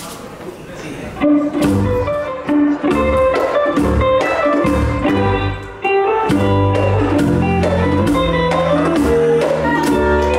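A live band starts a merengue about a second in: electric guitar playing the melody over electric bass notes and hand percussion, with a steady beat.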